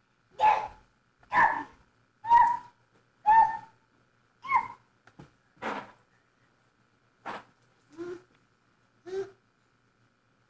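A dog barking repeatedly, about one bark a second, with the later barks quieter.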